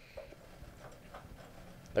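A few faint, light ticks and clicks over a quiet room background.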